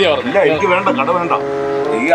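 Speech: a person talking, with one drawn-out, held sound in the second half.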